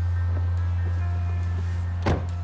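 Background music: a held, steady low bass note with faint sustained higher tones above it.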